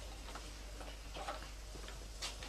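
Faint footsteps, about two steps a second, each a short sharp tap.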